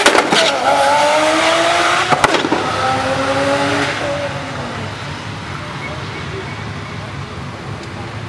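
Hyundai i30N's turbocharged 2.0-litre four-cylinder accelerating hard down a drag strip alongside another car, its engine pitch rising in two pulls with a gear change and a few sharp cracks about two seconds in. The sound then fades steadily as the cars run away into the distance.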